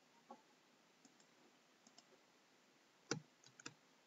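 Faint, sparse clicks of a computer mouse and keyboard, with a sharper cluster of several clicks about three seconds in.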